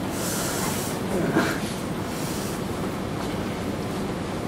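Steady hiss of room and microphone noise in a pause between spoken words, with a brief faint voice sound about a second and a half in.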